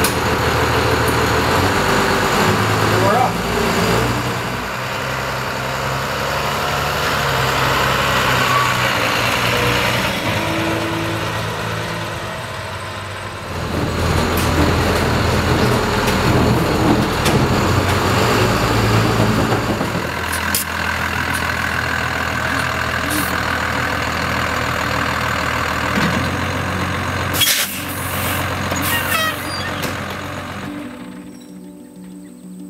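Cummins 5.9 diesel engine of a 1992 Blue Bird school bus running as the bus is driven, heard from the cab, its note dipping about 13 seconds in and picking up again. It is running on diesel to purge the waste vegetable oil from the fuel lines. A single sharp knock comes near the end.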